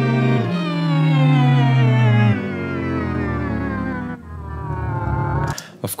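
A strings track played back through Logic Pro's Pitch Shifter, its semitone setting swept by the Modulator MIDI effect: the held string chords glide steadily downward in long sweeps, jumping back up about half a second in, and thin out after about four seconds.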